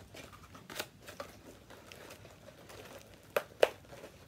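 Stiff dried tissue-paper mask shell being cut to open an eye hole, with light crinkling as it is handled. There are a few faint snips, then two sharp snaps close together near the end, the loudest sounds.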